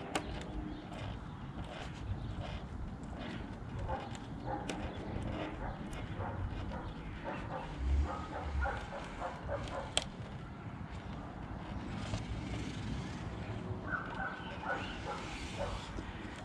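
Quiet handling of masking tape and a plastic grille as a razor-blade scraper presses the tape down into the grille's edge groove, with a few light clicks. Under it is a low outdoor background.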